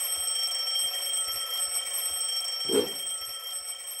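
An alarm clock ringing steadily after starting suddenly, with one brief, lower and louder sound about three-quarters of the way through.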